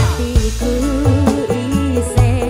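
Dangdut koplo band playing live, with a woman singing a Javanese melody with vibrato over deep bass and a drum beat.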